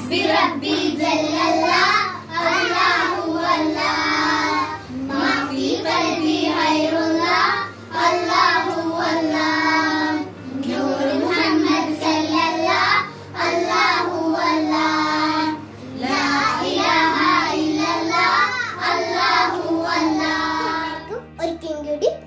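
A group of young girls singing together, phrase after phrase with short pauses for breath between.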